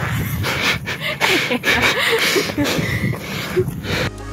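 Breathy laughter and panting from a person, over gusty wind noise on the microphone.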